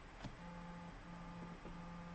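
Quiet room tone with a faint low hum that switches on and off in stretches of about half a second, and a single click about a quarter second in.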